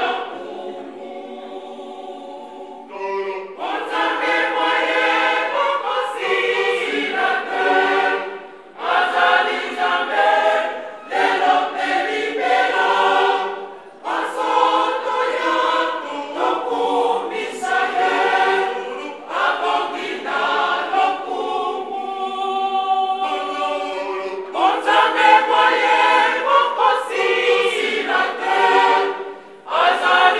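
Church choir of many voices, mostly women's, singing unaccompanied in phrases with short breaths between them. It turns softer and thinner about a second in and again around two-thirds of the way through, then swells back to full choir.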